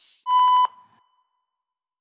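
A short, loud electronic beep: one high tone broken into a quick flutter of about five pulses, lasting under half a second, with a brief ring-out. A soft, brief hiss comes just before it.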